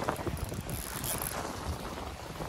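Wind buffeting the microphone, with sea water washing over shallow rocks.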